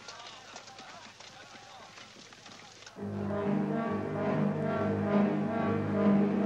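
Orchestral film score comes in suddenly about three seconds in, with low, sustained brass chords. Before it there is only faint background noise with distant voices.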